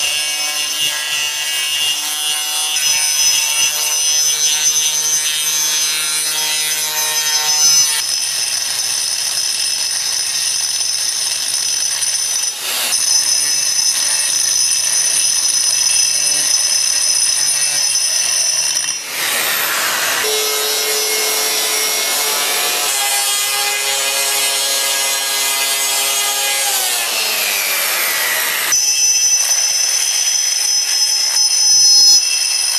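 Eibenstock EBS 1802 1800 W concrete grinder with a 125 mm grinding disc running under load, grinding across tile glaze and then granite. A steady high motor whine sits over a rough grinding noise. The sound changes abruptly several times, and the pitch falls briefly near the end.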